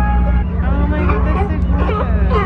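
Background music that stops about half a second in, giving way to California sea lions barking among people's voices, over a steady low rumble.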